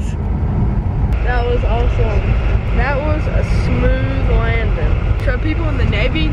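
Loud, steady low rumble inside an airliner cabin as the jet rolls along the runway, with voices talking over it from about a second in.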